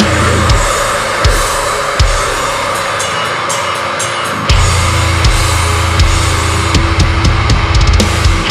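Instrumental passage of a deathcore metal song: heavily distorted electric guitars and drum kit, with no vocals. The deep low end thins out from about two seconds in and comes back in full about four and a half seconds in, with cymbal hits over it.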